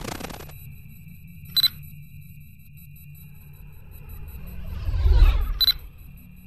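Electronic sound-design soundtrack: a steady high sine tone with a short bright beep about a second and a half in. A deep whoosh then swells up to its loudest just after five seconds, capped by a second beep just before the end. A brief crackling burst opens it.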